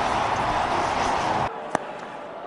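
Stadium crowd noise that drops off suddenly about three-quarters of the way in, followed by a single sharp crack of a cricket bat hitting the ball near the end.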